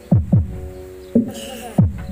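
Music played through the ACE LX20 power amplifier and a stack of speaker cabinets: heavy bass kick drums that drop sharply in pitch, over held synth tones. A short hiss comes in about one and a half seconds in.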